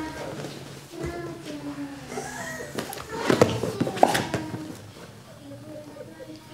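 Low voices talking in the room, with a louder burst of rustling and a couple of thumps about three to four seconds in as two grapplers shift their weight on the training mat.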